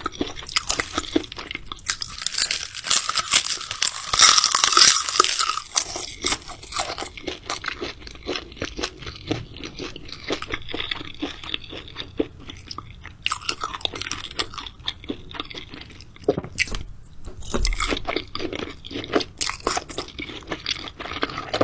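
Close-miked chewing of raw seafood: wet, crackly crunching bites, busiest in the first few seconds, with a brief lull past the middle.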